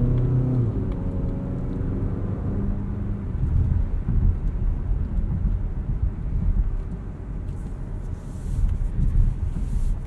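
Inside the cabin of a 2020 Mazda CX-30 on the move: the 2.5-litre four-cylinder engine hums steadily for the first few seconds, under low tyre and road rumble. The rumble takes over after that, and a rising hiss joins it for the last couple of seconds.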